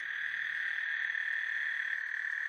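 A chorus of frogs calling together, heard as a steady high-pitched drone with no single call standing out.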